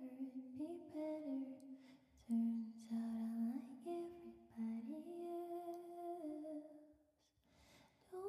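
A woman softly humming a slow, lullaby-like melody into a close microphone, in long held notes that step up and down, with a short pause near the end.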